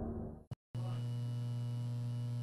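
The tail of the previous audio fades out into a brief dropout of dead silence, then a steady electrical mains hum with a buzz of evenly spaced overtones starts just under a second in and holds unchanged.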